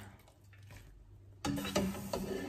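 A slotted spoon working in a pot of boiling pasta water, lifting out pasta: little is heard at first, then about a second and a half in a sudden clatter of the spoon against the pot.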